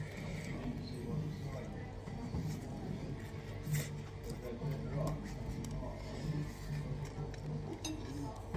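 Restaurant background: background music and the murmur of other diners' talk, with an occasional light clink of tableware.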